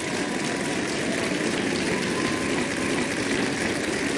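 Studio audience applauding and cheering, a steady wash of clapping with no break.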